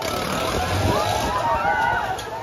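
Rush of air and low rumble of a fairground ride in motion, strongest in the first second or so, with many riders' voices calling out over it.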